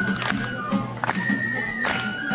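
Festival music: a high flute holds long notes that step up in pitch, over a steady drumbeat with sharp metallic strikes every second or so.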